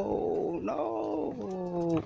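A person's long, drawn-out vocal exclamation, rough and strained for the first second, then held on a steady pitch that sinks slightly near the end.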